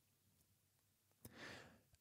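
Near silence, with a faint intake of breath a little over a second in, before the narrator speaks again.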